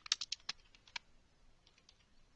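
Computer keyboard typing: a quick run of about eight keystrokes in the first second, then a few fainter key presses near the end.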